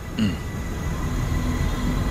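A low, steady rumble with a brief falling sound shortly after it begins.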